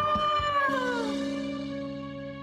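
A male singer holds a high final note that swells slightly and then glides down and fades about a second in, as a sustained chord of backing music comes in underneath.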